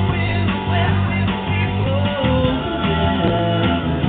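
Live rock music from a band with guitar, played loud and steady, with a single pitched line wavering up and down about halfway through.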